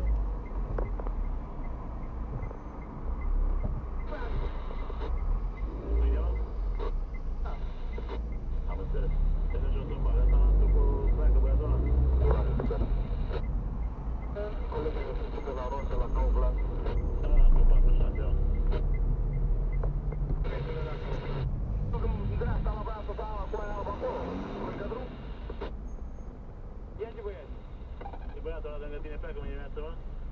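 Low engine and road rumble heard from inside a car's cabin as it moves slowly in city traffic, with voices talking at times over it.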